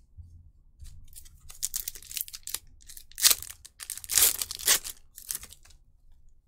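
Foil Pokémon booster pack wrapper being torn open and crinkled, a run of sharp rustling tears that starts about a second and a half in and dies away near the end.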